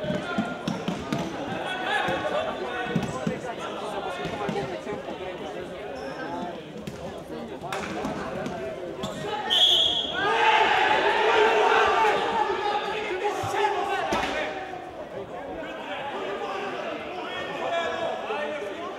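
Futsal ball being kicked and bouncing on a sports-hall floor, with players' shouts echoing in the large hall. A short, high whistle blast comes about halfway through, followed by several seconds of louder shouting.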